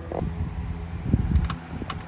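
Rumbling handling noise from the phone being moved around under the car, loudest around the middle, then two short sharp clicks about half a second apart, over a steady low hum.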